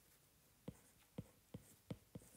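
Faint taps of a stylus on an iPad's glass screen during handwriting: four short, light ticks spaced about half a second apart in near silence.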